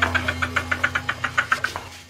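A rapid, even series of knocks, about seven a second, over a steady low hum; the knocks fade and the hum drops out near the end.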